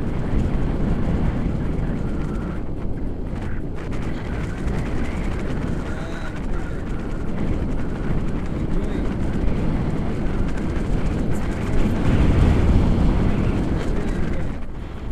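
Wind buffeting an action camera's microphone in flight under a tandem paraglider: a steady low rumble that swells near the end.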